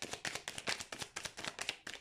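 A deck of fortune-telling cards being shuffled by hand: a quick run of light card flicks, about eight to ten a second.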